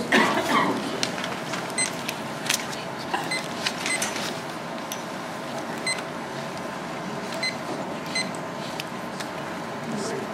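Applause dying away in the first second, then the steady room tone of a quiet audience hall, with a faint hum and scattered small clicks and rustles.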